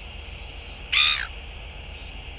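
A single short, harsh bird call about a second in, over a steady high hiss and a low rumble.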